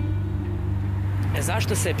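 Low, steady rumble of road traffic that fades out over the first second and a half, after which a woman starts speaking.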